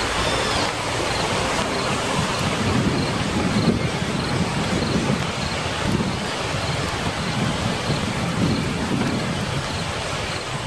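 Steady rushing noise with low rumbles swelling every second or two.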